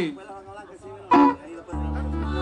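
Live band on stage: quiet stray instrument sounds and a brief loud burst about a second in, then near the end a loud chord from electric guitar and bass held steady.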